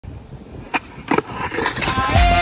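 Skateboard on a concrete skatepark surface: two sharp clacks of the board less than half a second apart, over a low rolling rumble.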